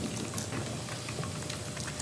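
Room tone through the meeting microphones: a steady hiss with a few faint small ticks.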